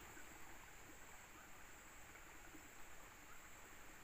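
Near silence: faint outdoor ambience with a steady high-pitched hiss.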